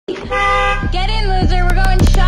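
A car horn sound effect honks once, steady, at the start of an intro music track. A wavering pitched tone follows, with a low bass line underneath and drum hits coming in near the end.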